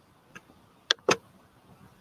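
Three sharp clicks: a faint one, then two louder ones in quick succession about a second in.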